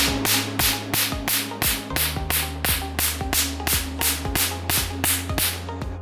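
Q-switched Nd:YAG laser's 532 nm handpiece firing pulses into black test paper. Each pulse is a sharp snap, about three a second, and they stop just before the end, the sound of a strong energy setting. Background music with a steady bass plays underneath.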